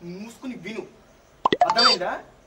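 Men's voices in a heated exchange, with a quick cluster of sharp clicks about a second and a half in.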